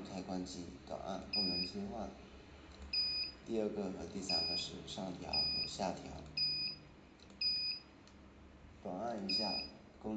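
About eight short, high electronic beeps, roughly a second apart, from the front-panel push buttons of a NIORFNIO NIO-T15B 15 W FM radio transmitter being pressed to step through its settings.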